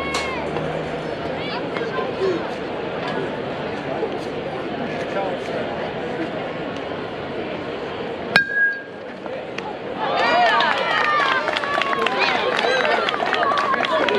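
A metal youth baseball bat hits the ball about eight seconds in: one sharp ping with a brief ring. Spectators and players then shout and cheer, over voices chattering in the background.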